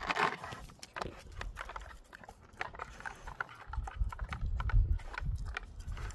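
A dog nosing and licking at a plastic hamburger-shaped treat puzzle toy to get at the snacks inside, making irregular plastic clicks and knocks as the toy's layers shift. A low rumble sounds in the second half.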